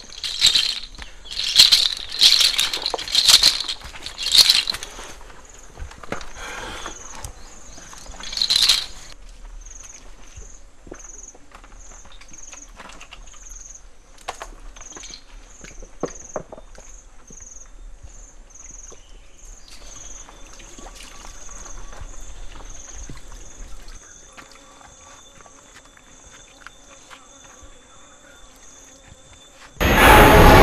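A rattle shaken in a series of loud strokes over the first few seconds and once more near nine seconds. Under it and after it comes a high insect chirp pulsing evenly, which fades out about four-fifths of the way through; faint held tones join it about two-thirds in.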